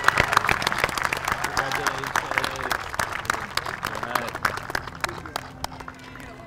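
Outdoor crowd applauding a graduate, with a few voices calling out underneath. The clapping thins out about five seconds in.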